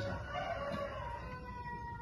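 A rooster crowing in the background: one long drawn-out call that falls slowly in pitch.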